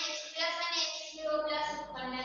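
A woman's voice speaking continuously at the blackboard, with long drawn-out vowels.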